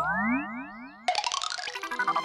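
A quick string of rising synthesized pitch glides, then about a second in a bright electronic jingle starts suddenly: a TV channel's ad-break bumper.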